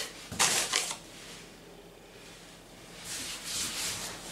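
Hands pressing and smoothing noodle dough on a floured tabletop: soft brushing and rustling, a short louder burst in the first second, quieter in the middle, picking up again near the end.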